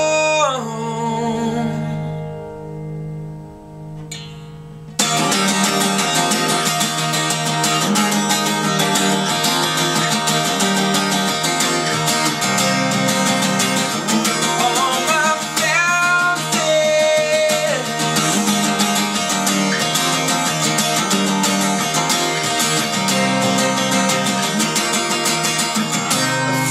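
Steel-string acoustic guitar. A strummed chord rings and fades over the first few seconds, then steady strumming comes back in sharply about five seconds in and carries on as an instrumental break between sung lines.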